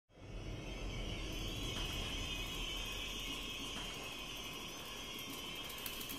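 A steady, low-level drone: a deep hum under a high hiss, fading in just after the start and holding level throughout.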